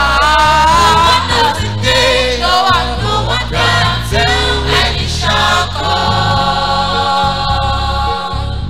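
Youth choir singing a gospel song in parts into microphones, over a steady low bass accompaniment. In the last couple of seconds the voices hold longer notes.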